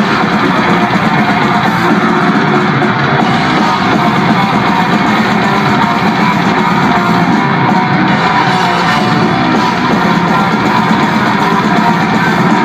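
Death metal band playing live and loud: distorted electric guitars over drums in a dense, unbroken wall of sound.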